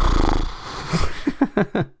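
A man lets out a long, raspy groan, then gives a brief laugh of a few short syllables.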